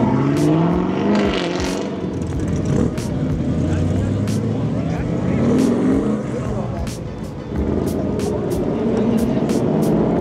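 Performance cars accelerating away one after another, each engine revving up in rising pitch: one just at the start, another about five seconds in and a third near the end. The first is a red Chevrolet Camaro pulling away.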